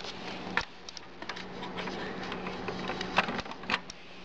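Dell Dimension 2400 desktop computer being switched on: a sharp click about half a second in, then a steady low hum and hiss of the machine running, with a few more clicks and knocks near the end.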